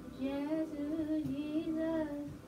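A woman singing one held, wavering phrase of a gospel melody over keyboard chords; her voice comes in about a quarter second in.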